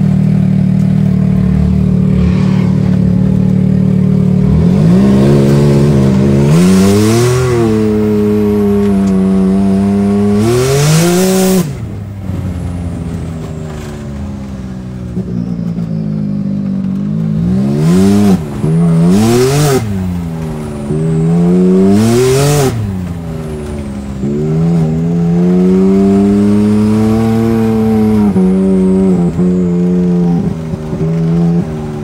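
Side-by-side UTV engine idling steadily, then revving up and falling back repeatedly as it pulls along a dirt trail. Short bursts of rushing noise come at several of the rev peaks.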